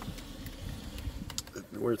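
A few faint, sharp clicks over a low steady hum, like small handling noises from the RCA video cable and plug at the dash.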